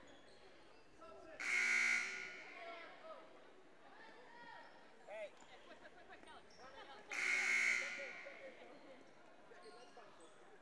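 Gymnasium scoreboard horn sounding twice, each blast a harsh buzz just under a second long, about six seconds apart, with voices murmuring around the gym between them.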